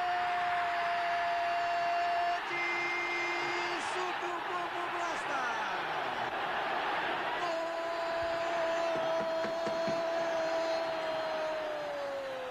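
A football commentator's long drawn-out goal cry on one held note, breaking off after about two seconds and taken up again past halfway, sliding down in pitch at the end, over a stadium crowd cheering the goal.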